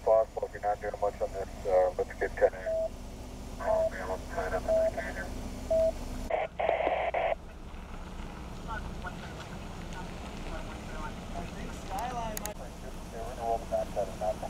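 Police radio traffic: voices coming through a radio, thin and narrow-sounding, with a short burst of static about six seconds in and more radio voice near the end.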